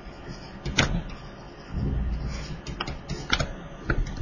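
A few sharp taps and clicks with a low rumble, from a stylus writing on a pen tablet.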